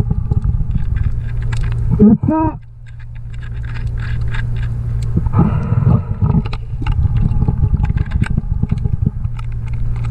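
Underwater sound: a steady low hum with scattered clicks, a short voiced grunt from the diver about two seconds in, and a louder rush of noise around five to six seconds in.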